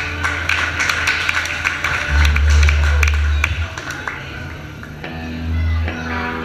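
Live rockabilly trio between songs: a burst of clapping and crowd voices while the upright double bass sounds low notes, then about five seconds in the double bass and guitars start the next number.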